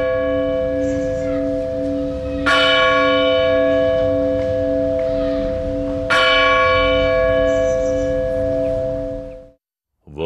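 A large church bell struck twice, about two and a half and six seconds in. Each stroke rings on over the steady, wavering hum of the one before, and the sound dies away near the end.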